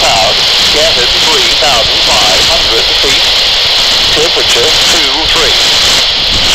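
Brisbane ATIS broadcast on 125.5 MHz coming through a handheld scanner's small speaker: a voice reading the airport information, its words indistinct under loud, steady static hiss.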